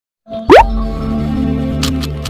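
Logo-intro sound effect: a fast rising swoosh that lands on a deep boom about half a second in, then a held low musical tone. A sharp click comes near the end as the animated cube begins to turn.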